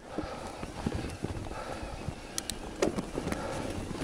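Electric mountain bike rolling over a rooty, rocky dirt trail: a steady tyre rumble with irregular knocks and sharp clicks as the wheels hit roots and rocks and the bike rattles.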